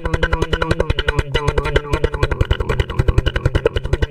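Human beatboxing: a fast, even buzzing bass pulse with a hummed, shifting tone over it.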